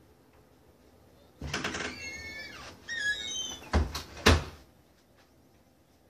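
A door creaking open, a high squeal that bends up and down in pitch for about two seconds, then two sharp knocks about half a second apart.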